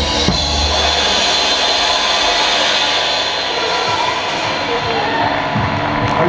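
Drum kit with one hit at the very start, then a steady, sustained cymbal wash that holds without dying away.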